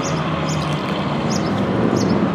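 Steady motor and traffic noise with a low hum, and short high chirps repeating about twice a second.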